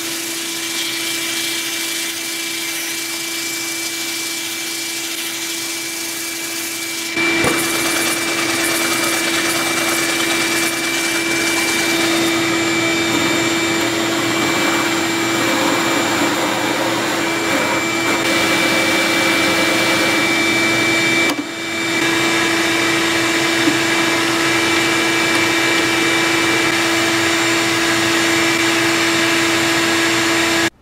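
Drill press running steadily, spinning stacked softwood blocks on a threaded rod against a hand-held sandpaper block, with a shop vacuum drawing off the dust. The steady hum and whine get a little louder about seven seconds in and drop out for a moment about two-thirds of the way through.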